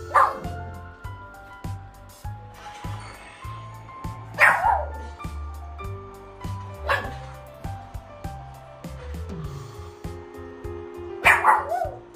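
A small puppy barking in sharp, high yips, four times, a few seconds apart, each dropping in pitch: begging for food at the table.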